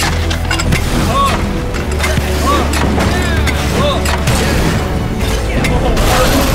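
Cinematic advert soundtrack: a steady low drone under layered sound effects of booms, sharp mechanical clicks and impacts, with short swooping tones scattered through.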